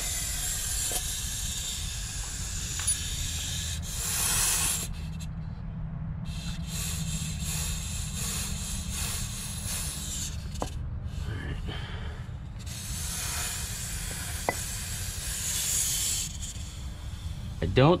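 Compressed air hissing out of a Hendrickson TIREMAAX PRO tire-inflation hubcap as it is pulled off a semi-trailer hub: the leak is at the hubcap's rotary union, where the inflation hose meets the cap. The hiss cuts out briefly twice, and a steady low rumble runs underneath.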